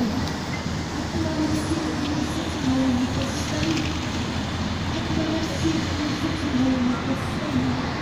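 Steady rushing street noise of traffic on a wet road, with the low hum of passing cars and minibuses.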